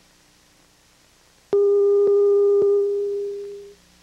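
A steady, single-pitched electronic tone starts suddenly about one and a half seconds in over a faint low hum. Three faint clicks come about half a second apart, and the tone fades out just before the end. It sounds over a blacked-out broadcast feed during a brief technical fault.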